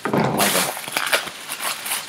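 Plastic air-pillow packing bags being squeezed and crushed by hand, crinkling and crackling, with the loudest, coarsest burst in the first half second.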